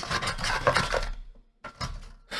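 Cardboard packaging being handled, with rustling and light knocks for about a second, a short pause, then a couple of small clicks.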